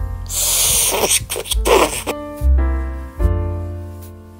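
A person blowing hard into the microphone: a rushing breath of about a second, then a shorter puff, over background music with a bass line and held notes that carries on afterwards.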